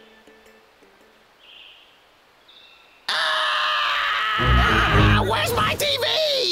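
Cartoon soundtrack: near quiet for about three seconds, then a sudden loud burst of music and sound effects that carries on, with a low pulsing beat joining it. Near the end a man's alarmed yell is heard.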